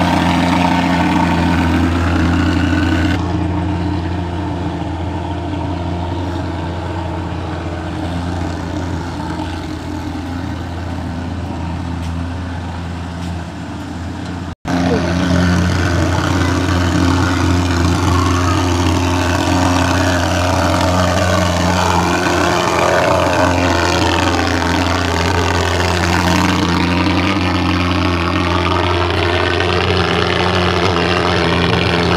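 Portable thermal fogging machine running continuously with a loud, steady, low-pitched drone while it sprays insecticide fog. The sound cuts out for an instant about halfway through.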